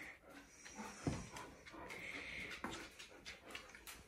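Faint sounds of Alaskan malamutes moving about on a tiled floor: a few light clicks, a soft thump about a second in, and breathing.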